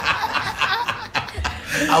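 People chuckling and laughing softly, with a word spoken near the end.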